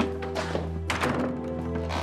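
Soft background music with long held notes, over a wooden door being shut: a few short knocks and a thunk about a second in as it closes.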